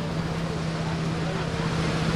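A parked fire engine's motor running with a steady low hum, under the background talk of a crowd.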